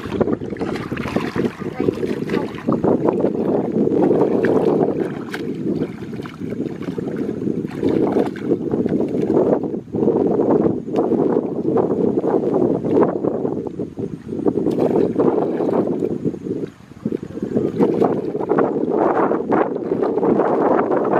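Wind noise on the microphone throughout, over splashing and sloshing of water as people wade through shallow water and scoop with a basket.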